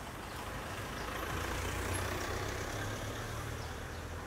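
Nissan Navara pickup truck driving past, its engine and tyres growing louder to about halfway and then fading away.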